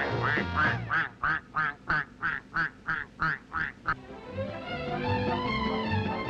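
A duck quacking in a quick, even run of about a dozen quacks, about three a second. The quacking stops at about four seconds in, and orchestral music with long held notes comes in.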